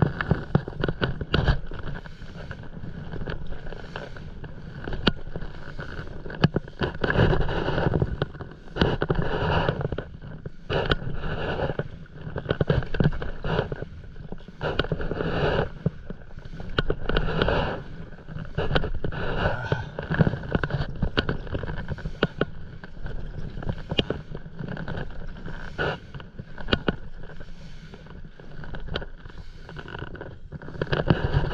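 Stand-up paddleboard paddle strokes through the water, a swishing splash every couple of seconds, with small splashes and knocks in between. Wind buffets the microphone with a steady low rumble.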